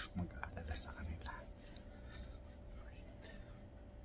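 Soft whispering with a few small mouth clicks in the first second and a half, then only a faint steady hum.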